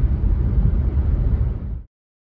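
Steady low rumble of road and engine noise inside a moving car's cabin, cutting off abruptly near the end.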